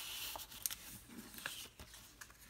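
Paper watercolor swatch cards being slid into and handled against a clear plastic sleeve pocket: a soft rustling slide at first, then a few small crinkling ticks.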